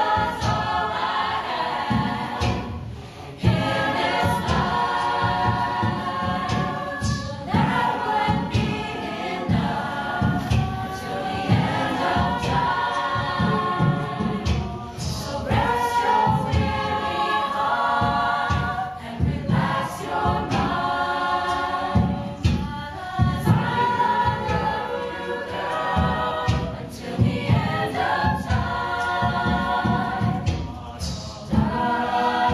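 Mixed-voice a cappella group singing live: held, layered harmonies over a steady low vocal pulse, with a short break about three seconds in.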